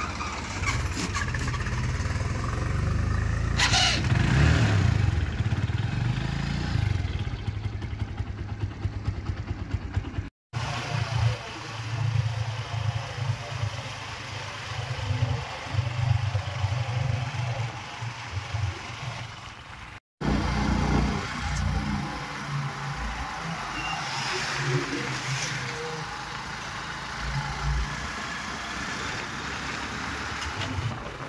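A farm tractor's diesel engine running as it drives past, growing louder about four seconds in. After a cut, a TVS motorcycle engine idles with a low, uneven pulse, and after a second cut it runs while the bike is ridden along a road.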